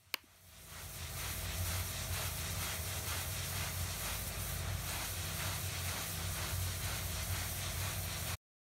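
A 4000 psi hot-water pressure washer's wand spraying a concrete floor: a steady hiss over a low hum, fading in over about a second after a short click.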